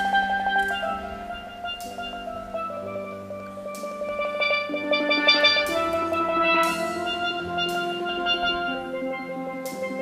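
Steelpan music: long held, rolled notes in changing chords, with sharp percussion hits about every two seconds.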